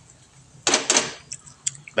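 A spatula scraping twice across a frying pan just past halfway, followed by a few light clicks.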